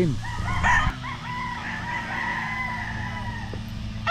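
Gamecock roosters crowing: one long drawn-out crow held for about three seconds, with another crow starting at the very end. A steady low hum of a grass mower's engine runs underneath.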